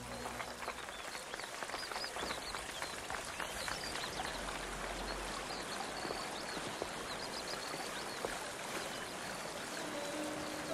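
Ornamental fountain water cascading and splashing over stone basins in a steady rush.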